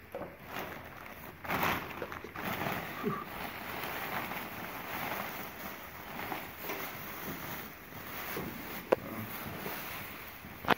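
Plastic bags rustling and crinkling as a bundle wrapped in clear plastic is pulled out of a black garbage bag, with one sharp click near the end.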